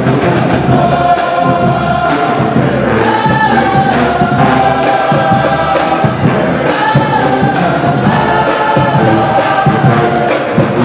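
Marching band playing a loud, sustained tune on trombones, sousaphones, mellophones and saxophones over a steady beat.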